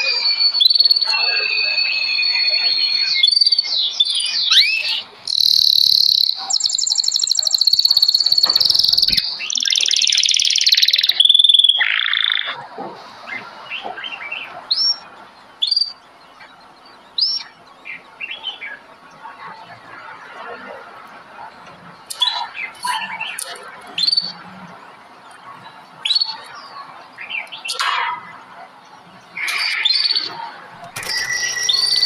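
Several songbirds singing and calling together. Loud, varied whistles and trills fill the first dozen seconds, then thin out to scattered short rising chirps that grow busier again near the end.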